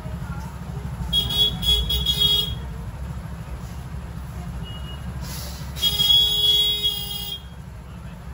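Two vehicle horn honks from street traffic, each held for more than a second: one about a second in and a louder one near the end. A steady low traffic rumble runs underneath.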